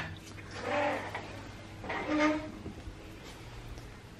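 A sliding glass door unlatched with a click and slid open on its track, rolling in two short pushes.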